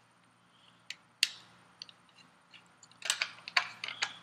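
Sharp clicks and taps of circuit boards being handled and one Arduino shield's header pins pressed onto another. There is a single loud click just over a second in, then a cluster of clicks about three seconds in.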